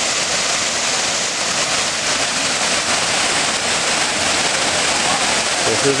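Waterfall: water pouring down onto rocks and into a pool, a steady, loud rush of falling and splashing water.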